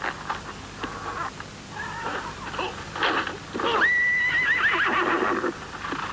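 A restless horse whinnying. Scattered knocks and short calls lead up to one long, loud neigh with a wavering pitch, starting just under four seconds in.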